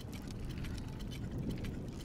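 Faint background ambience with many small scattered clicks and crackles over a low, even hiss.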